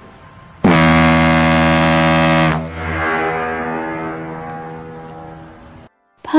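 A loud, low horn-like tone with a hiss over it. It starts about half a second in, holds steady for about two seconds, then dies away slowly until just before the end.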